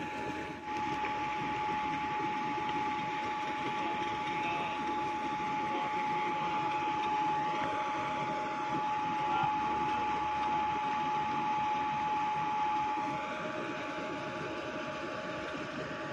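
Tube well's electric pump motor running steadily, a constant high whine over a rushing noise of water flowing in the irrigation channel.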